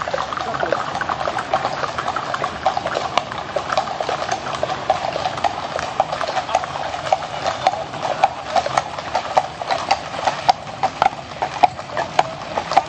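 Horses' hooves clip-clopping on a paved road as horse-drawn carriages pass, the hoofbeats growing louder and more frequent toward the end.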